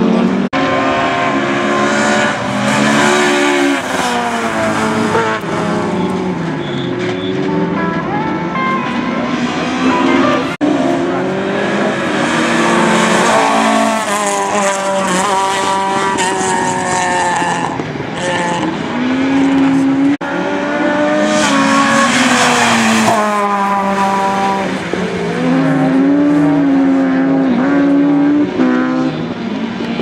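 Rally cars driven hard through a tarmac chicane one after another, each engine revving up and dropping back again and again with gear changes and lifts off the throttle, with tyres squealing at times.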